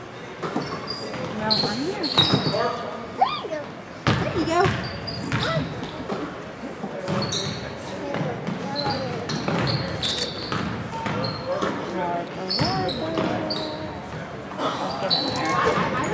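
Basketball dribbled on a hardwood gym floor, with sneakers squeaking in short high chirps and spectators' voices, echoing in a large gymnasium.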